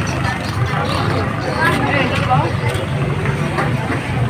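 Busy open-air market: people talking nearby and a general crowd chatter, over the steady low running of motorbike and car engines in the street.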